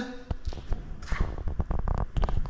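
Footsteps and light knocks on a plywood boat hull, a quicker run of knocks in the second half.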